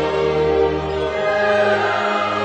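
Slow music with a choir holding long sustained notes over an accompaniment, the chord changing near the end.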